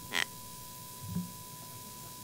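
Quiet room tone picked up by a podium microphone, with a faint steady high-pitched whine, a brief soft rustle just after the start and a short low sound about a second in.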